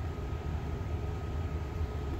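Steady low background rumble with a faint thin hum, with no distinct events.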